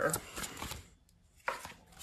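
Tarot cards handled on a tabletop: faint rustling, then a single sharp tap about halfway through as a card is laid down.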